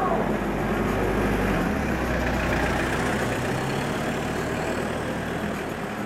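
A motor vehicle's engine running close by on the road, a steady low rumble that eases slightly toward the end.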